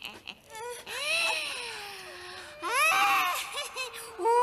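A woman crying out in a long, wavering wail that falls away, then a second, shorter rising cry about three seconds in.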